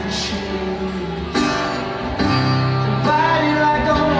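Live band music: acoustic guitar and keyboard playing a song, growing louder about a second and a half in.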